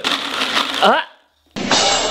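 Capsules rattling and clattering in a plastic supplement tub as a hand rummages through them, a dense run of small clicks for just under a second. A short rising 'ah' follows, then the sound cuts out briefly.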